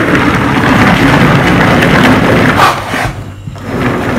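Hand-cranked manual food chopper running: plastic gears and spinning blades churn and rattle as they chop onion, pepper, parsley and garlic into a paste. The churning stops briefly about three seconds in, then starts again.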